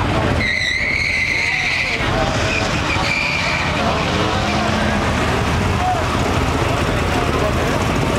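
Two cars launching off a drag-strip start line and accelerating away down the track, tires squealing for the first couple of seconds, with a shorter squeal about three seconds in.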